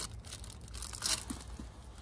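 A small plastic packet crinkling as it is handled, with a brief louder rustle about a second in, over a steady low hum.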